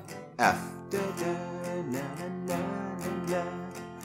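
Steel-string acoustic guitar strummed on an F major barre chord in a down, down, up, up, down, up pattern, about three strums a second, the chord ringing between strokes.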